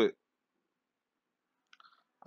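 The last syllable of a spoken word, then silence, with a few faint, brief clicks near the end.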